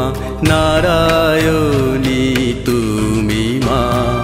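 A Bengali devotional bhajan to Durga: a singer holding long, gliding notes over instrumental accompaniment with percussion.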